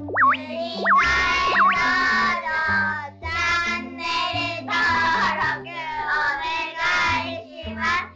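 Outro song: singing over music with a stepping bass line. It opens with a few quick whistle-like pitch swoops in the first two seconds.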